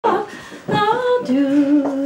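An unaccompanied voice singing a short phrase, settling about halfway through into one long held note.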